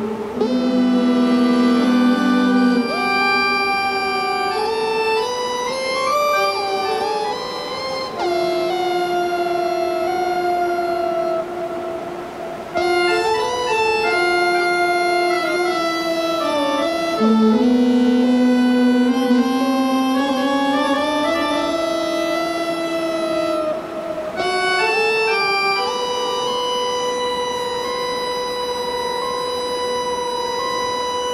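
Improvised music on an amplified Hammond 44 PRO keyboard harmonica (melodion): sustained reedy chords and slowly shifting held notes, with a few tones sliding in pitch. The last few seconds settle on a steady held drone.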